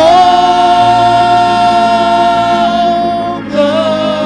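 Gospel praise-team singers holding one long sung note of a worship song, then moving down to a lower note about three and a half seconds in.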